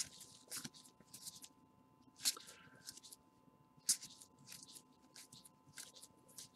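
Topps High Tek trading cards, which are printed on clear plastic, slid one over another as they are flipped through by hand: a run of short, soft swishes, the sharpest about two and four seconds in. A faint steady hum runs underneath.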